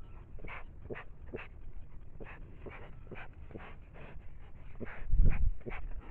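A bear sniffing and huffing close to a trail camera's built-in microphone, short breaths about two a second. About five seconds in, a loud low thump and rub as the animal's body bumps against the camera.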